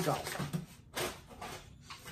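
Paper and wrapping of a mailed package rustling as it is handled and opened, in a few short bursts.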